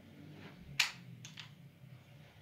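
Wall light switch being flicked off: one sharp click, then two lighter clicks about half a second later.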